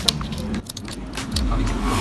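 Cracked fiberglass on a surfboard's damaged nose crackling and snapping as it is picked and peeled off by hand: a scatter of sharp clicks, most of them in the first second, over a low rumble.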